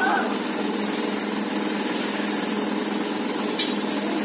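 A steady motor drone with a constant low hum that holds an even level throughout, with a faint voice at the very start.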